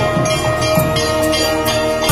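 Metal bells ringing with many steady tones, with clanging strikes about three times a second, like temple puja bell-and-percussion music.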